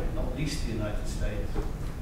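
Speech only: a man talking, his words not made out, over a low room rumble.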